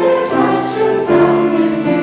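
Church choir singing in parts with grand piano accompaniment, held chords changing about every half second.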